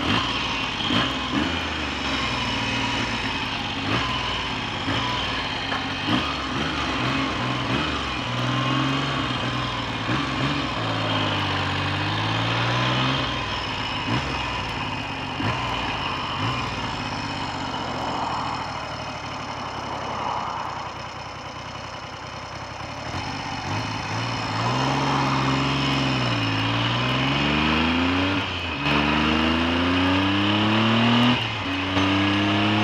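Triumph Trident T150V's air-cooled three-cylinder engine running as the bike is ridden, its revs rising and falling several times as it pulls away and accelerates.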